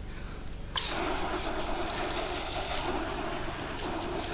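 Garden hose spray-gun nozzle switched on suddenly just under a second in, then a steady shower of water spraying onto a shallow black plastic bird-water dish to rinse it out.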